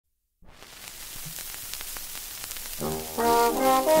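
Shellac 78 rpm record playing: surface hiss and crackle from the groove, then a 1931 dance band's fox-trot introduction enters with brass about three seconds in.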